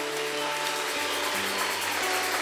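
A congregation clapping, a dense run of hand claps, over held instrumental chords that change about a second in.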